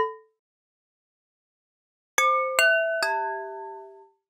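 A sampled wine-glass tap played as pitched notes from a keyboard through Logic Pro's Quick Sampler, with a high-pass filter rolling off the bottom. A short note dies away at the start, then about two seconds in come three glassy struck notes in quick succession, the last one lower and ringing longest.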